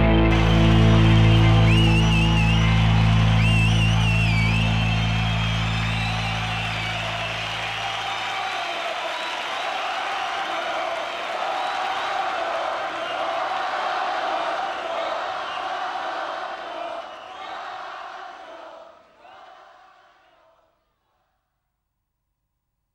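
Closing of a flamenco-rock song: the band's final chord rings out, its bass dying away about eight seconds in. A quieter, steady wash of sound follows and fades to silence near the end.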